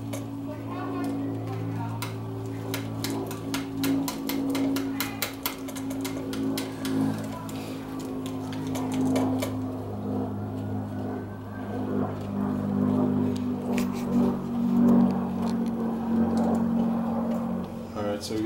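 Background voices and music playing steadily under the work, with runs of quick small clicks from hand-tool work on the motorcycle's handlebar brake bracket, dense from about two to eight seconds in and again briefly near the end.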